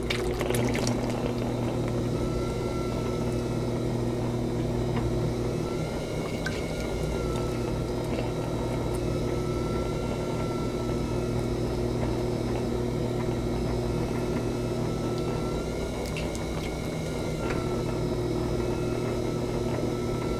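Electric pottery wheel running with a steady hum and a faint wavering whine, while wet clay and slurry swish under the hands as the clay is centered and coned up.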